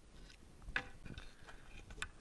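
Faint handling noise: a few light knocks and clicks, the loudest a little under a second in, as a board is laid flat on a table and a PEX pipe and plastic tube hanger are handled on it.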